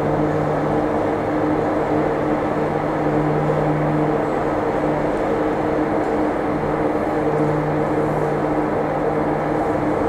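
Funicular railway running as its car climbs the track: a steady mechanical hum with a low drone and an even rushing noise.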